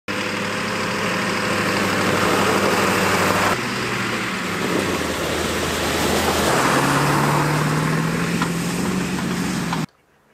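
Engine of a Ford cutaway shuttle bus running as it drives along a snowy dirt track. Its note changes abruptly twice, and over the last few seconds the pitch rises slowly as the engine speeds up.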